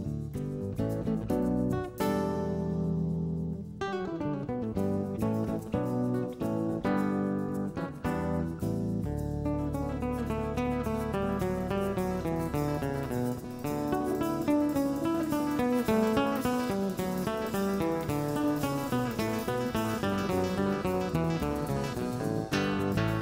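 Live instrumental jazz: a guitar playing a fast, dense run of picked notes over low sustained bass notes, with a held chord a couple of seconds in.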